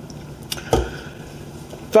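Quiet room tone in a pause of a lecture, with a sharp click about half a second in and a dull low thump just after it.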